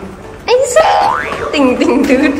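An edited-in comic sound effect about half a second in: a pitched sound that rises quickly, laid over background music with a sung voice.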